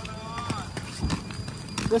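Ski boots clomping on a paved parking lot: a few hard, uneven footsteps as skiers walk.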